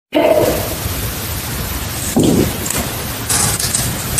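Steady hiss of a camera recording in a quiet room, with a short breathy burst of hiss near the end, which the investigators label a random breath, and a couple of brief low sounds earlier.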